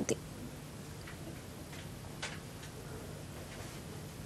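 Faint steady background hum with a few soft, scattered ticks.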